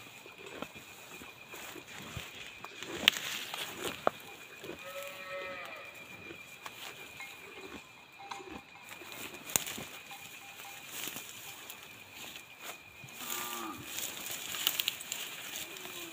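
Cattle calling: two short calls, one about five seconds in and a lower one near the end, over scattered clicks and rustling. A faint steady insect trill runs behind.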